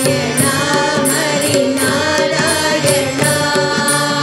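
Hindu devotional bhajan sung live by a lead woman singer and group, accompanied by a harmonium's steady reedy chords and tabla and dholak strokes.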